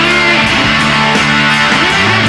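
Live blues-rock band playing an instrumental passage: electric guitars over bass and drums, loud and steady.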